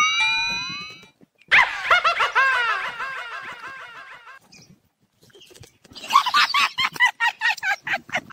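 Comic sound effects: a rising whistle-like tone about a second long, then a fading run of quick squeaky chirps. Laughter follows near the end.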